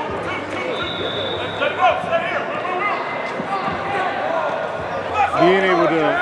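Several voices talking over one another on a football field, with a few scattered thumps. A louder voice comes in near the end.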